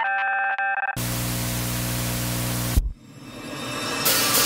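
Produced song intro: about a second of bell-like keyboard notes, then a loud burst of static with a low hum that cuts off suddenly, followed by a rising noise swell leading into the band.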